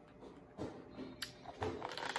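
Faint mouth sounds of someone tasting a sip of coffee: swallowing and lip smacks, with a few soft clicks in the second half.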